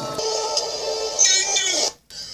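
A held, electronically processed vocal note. About a second in, a loud high-pitched shriek joins it, and the sound cuts off abruptly just before the end.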